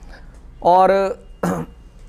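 A man's voice drawing out a single word, followed by a short throat-clear about a second and a half in.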